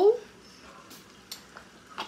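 Pot of palm-oil okra soup simmering on the stove: a faint steady hiss, with a couple of light clicks around the middle.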